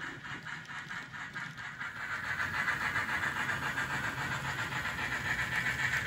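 N-scale model trains running on a layout: a steady whir with fast, even clicking of wheels over the track, growing louder about two seconds in as a train nears.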